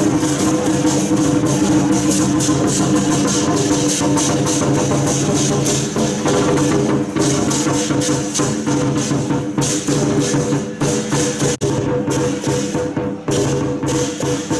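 Loud lion dance percussion: dense, rapid cymbal clashing over a steady ringing tone.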